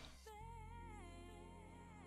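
Faint background music: a wavering, sung-like melody line that comes in about a third of a second in and carries on steadily.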